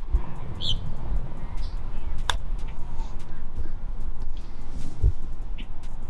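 Wind buffeting the microphone. A single sharp click about two seconds in is a golf iron striking the ball on a short pitch shot, and there are a few brief bird chirps.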